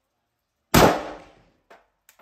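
A single shot from an AK-pattern WASR rifle fitted with a KNS adjustable gas piston: one sharp, loud report with a short echo that dies away within about a second. A faint click follows near the end.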